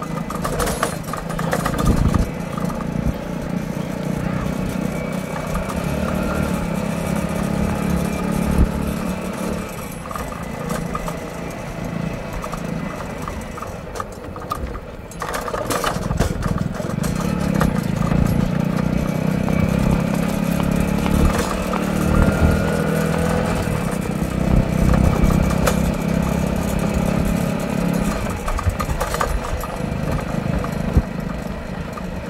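A motor vehicle's engine running steadily at speed. It eases off briefly about halfway through, then runs louder again.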